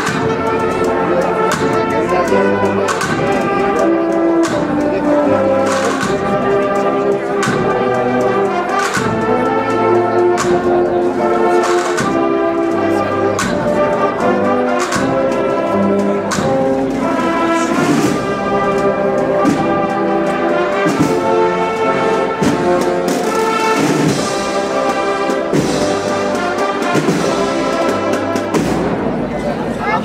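Brass band playing a processional march: sustained trumpet and trombone chords over a steady drum beat.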